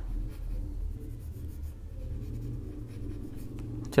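Pencil scratching on paper in short sketching strokes during the light first drawing of a dog's legs, over a low steady hum.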